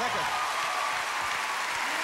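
A large studio audience applauding steadily.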